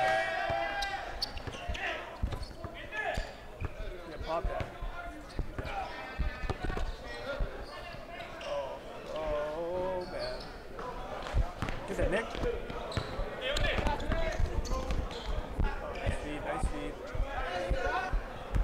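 A basketball bouncing on a hard court in irregular thumps during a pickup game, with players' voices talking and calling out over it.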